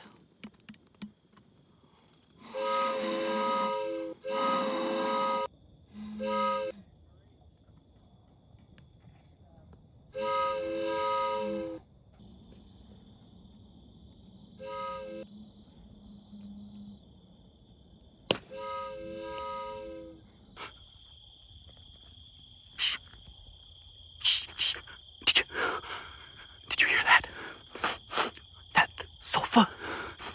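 Breathy, hooting tones blown across the mouth of a plastic soda bottle, sounded six times in short groups, some long and some short. In the last third, a steady high thin tone runs on while sharp cracks, like twigs snapping in brush, come thicker toward the end.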